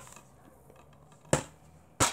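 Yellow plastic DVD case being opened by hand, with a sharp snap of the clasp coming free about a second and a half in and another click right at the end.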